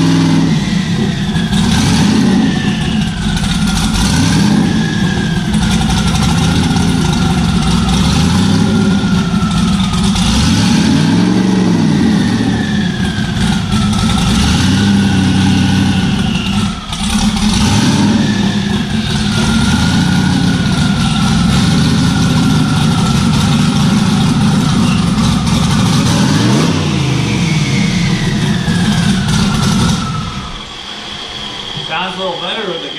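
Twin-turbo LSX 427 V8 of a C5 Corvette race car idling with a lumpy note, rising and falling with a few light revs, while a high whine wavers up and down above the engine.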